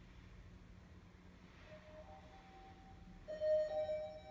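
Elevator arrival chime ringing a little over three seconds in: a bright pitched ding with a slightly higher second note, the hall lantern lighting as the car arrives. A faint steady hum lies underneath.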